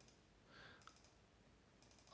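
Near silence: faint room tone with a small click just under a second in and a couple of fainter clicks near the end, from a computer mouse being clicked.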